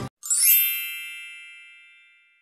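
A bright sparkle chime sound effect: one ding of many high ringing tones, starting a moment after the music cuts off and fading away over about two seconds.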